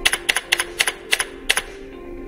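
Computer keyboard typing: a quick run of about ten keystroke clicks that stops about a second and a half in, over soft background music.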